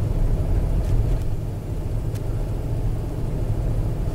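Car driving along a road, heard from inside the cabin: a steady low rumble of engine and road noise.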